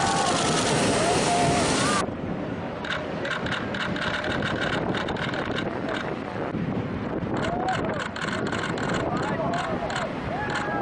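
Rush of wind and big breaking surf, with people shouting excitedly for the first two seconds. After a sudden cut the sound drops to a steadier rush of wind and water with crackling on the microphone and a few brief voices.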